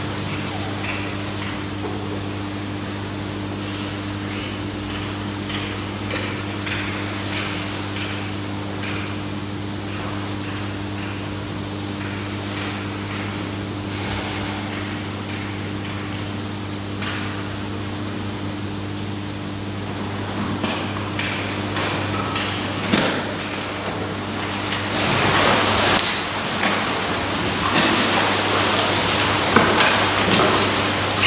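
Steady low electrical hum with a faint hiss and occasional small clicks in a quiet church. In the last several seconds come rustling, shuffling and light knocks as people get up from wooden pews.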